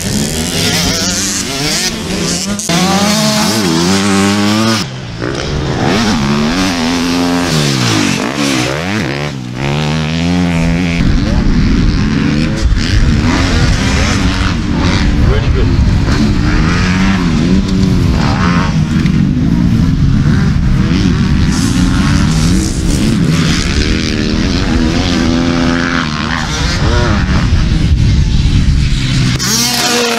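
Motocross bikes' engines revving hard and easing off, several bikes at once, their pitch rising and falling over and over as riders accelerate out of corners and over jumps.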